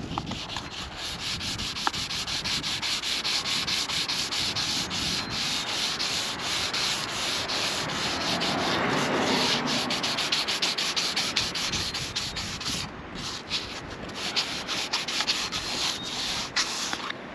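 Sandpaper rubbed by hand over the fiberglass gel coat of a boat hull, smoothing a fresh gel coat repair. It runs as rapid back-and-forth strokes of hiss, with a short break about 13 seconds in.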